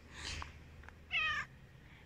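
Silver tabby domestic shorthair cat giving one short, high-pitched meow about a second in.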